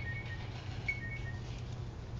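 Two short, faint two-note tones, the second note lower than the first, about a second apart, over a low steady hum.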